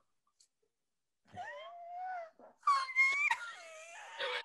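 Women's high-pitched, wailing laughter, starting after about a second of silence and getting louder in the second half.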